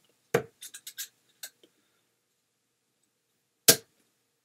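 Steel-tip tungsten darts striking a bristle dartboard: a sharp thud about a third of a second in, a few faint ticks over the next second, and a louder thud near the end.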